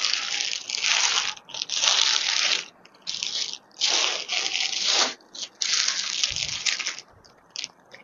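Rustling and crinkling of clothing being unfolded and handled close to the microphone, in repeated crisp bursts about a second long with short pauses between them.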